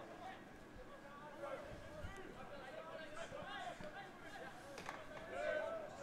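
Faint, distant voices out on a football pitch: players and onlookers calling and shouting over the open-air field sound.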